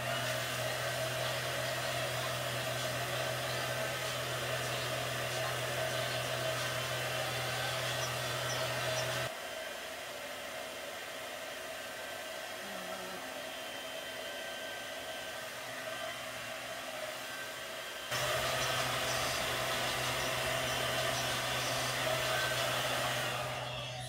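Hair dryer with a diffuser attachment running steadily while drying curly hair. About nine seconds in it goes noticeably softer for about nine seconds, then comes back up to full, and it cuts off near the end.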